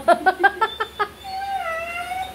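Dog whining on cue when asked to say goodbye: a quick run of short whimpers, then a long, wavering whine starting about a second and a half in.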